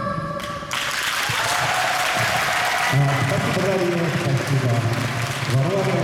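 The routine's music cuts off under a second in, and audience applause fills the rest, with a voice heard over it from about halfway.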